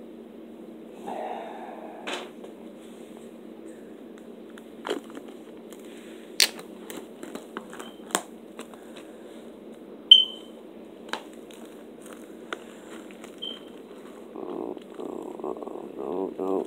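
Plastic wrapping on a Blu-ray steelbook case crackling as it is handled and peeled off: scattered sharp crackles and clicks over a steady low hum. A short high squeak about ten seconds in is the loudest sound.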